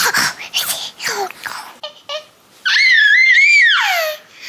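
Baby girl's excited, breathy laughter, then a loud high-pitched squeal lasting about a second, wavering and dropping in pitch as it ends.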